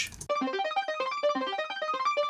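Alchemy software synth lead playing fast arpeggiated chords in sixteenth notes, starting just after a word at the very start. Each note is followed by a quieter thirty-second-note echo an octave up from the Note Repeater, a glassy echo going up.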